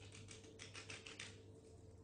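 Faint, rapid crackling of parchment paper under fingertips as a piece of cookie dough is pressed flat on it, thickest in the first second and a half and sparser after.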